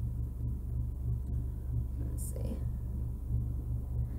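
Steady low electrical hum with a few faint ticks, and a brief whispered breath about two seconds in.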